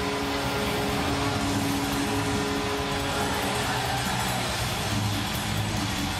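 Arena goal-celebration sound after a goal: a dense, steady wash of crowd-style noise with music and a few held horn-like tones under it. The held tones fade out about halfway through.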